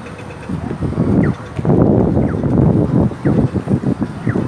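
Wind buffeting a phone's microphone in uneven gusts, loudest from about one to three and a half seconds in.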